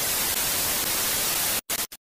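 Television static sound effect: a steady hiss of white noise that breaks off briefly twice near the end and then cuts out.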